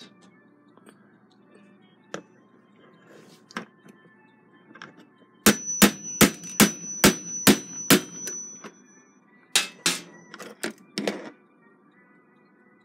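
Small hammer tapping on pliers wedged against the shuck pinion of a clock movement, metal on metal, to drive the pinion off its arbor. About halfway in comes a quick run of about eight sharp taps, some three a second, with a high ring hanging over them, then about five more spaced taps.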